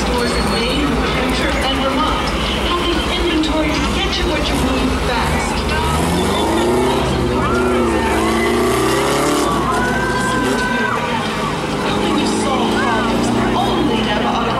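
Four-cylinder pro-stock race car engine pulling away, its revs rising and falling from about six seconds in, over a background of voices and crowd noise.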